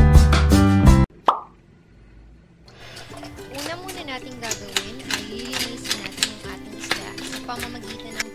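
Loud background music cuts off about a second in, followed by a short plop-like effect. From about three seconds in, a knife scrapes the scales off a parrotfish in quick, irregular scratchy clicks, under soft music.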